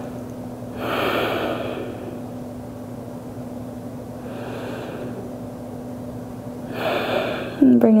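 A woman taking slow, deep breaths while holding a yoga pose: three audible breaths a few seconds apart, the first the loudest.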